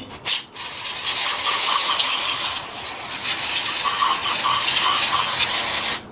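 Aerosol carburettor cleaner spraying onto a throttle body, cleaning its bore. The hiss starts with a short burst, then runs as a long continuous jet that eases off briefly about halfway before picking up again, and it stops abruptly at the end.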